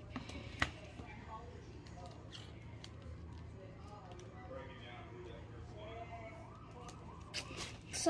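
Plastic twisty puzzle being turned by hand, with one sharp click about half a second in. Under it runs a steady low hum, and faint wavering tones sit in the background.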